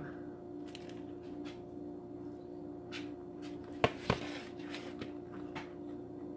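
Close-up chewing of a bite of sandwich, soft mouth noises with two sharp clicks about four seconds in, over a steady low hum.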